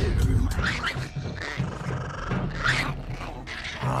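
Snarling, growling creature voices with two rising, shrieking cries about two seconds apart, over a film score: the sound effects for the small Decepticon creatures.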